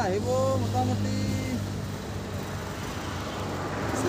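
Outdoor ambience with a steady low hum from a motor vehicle engine running nearby. A faint distant voice is heard in the first second and a half.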